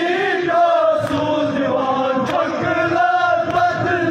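Male voices chanting a Kashmiri nowha, a Shia mourning lament, in long held melodic lines, with a couple of sharp slaps heard through it.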